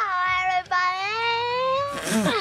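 A girl singing in a high voice with long held notes, broken once about two thirds of a second in, then one long note that slowly rises in pitch.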